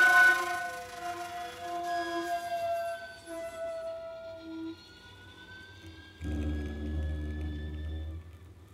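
Live chamber music for violin, cello and shakuhachi: a loud chord fades in the first second into soft, held string tones, with a thin high note slowly rising in pitch. About six seconds in, a low cello note enters and holds.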